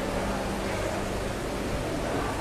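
Steady, noisy background ambience, with a faint low hum for about the first second.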